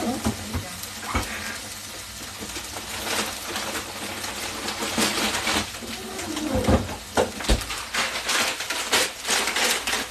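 Chicken breasts sizzling steadily in a hot cast-iron skillet. From about halfway they are overlaid by a run of kitchen clatter and rustling, with a couple of dull thumps.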